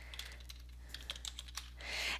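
Typing on a computer keyboard: a handful of light, scattered key clicks over a faint steady low hum.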